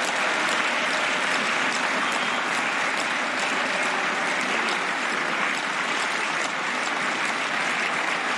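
Sustained applause from a large assembly of parliament members: many hands clapping steadily at an even level, greeting the announced vote result.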